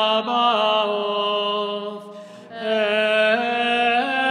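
Slow Byzantine-rite liturgical chant, sung as long held notes that step from pitch to pitch. There is a brief break between phrases about two seconds in.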